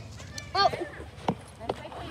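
A short vocal "oh", then two sharp knocks about a second apart from a pet stroller's plastic wheels and frame as it starts being pushed along pavement.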